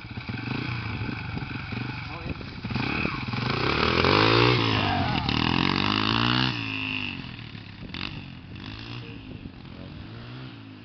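Dirt bike engine revving as the bike pulls away, its pitch rising and falling through the gears. It is loudest around the middle, then fades as the bike rides off.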